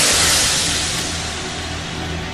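A loud rushing whoosh that starts suddenly and fades away over about two seconds as a latex face mask is peeled off, laid over a low droning music bed.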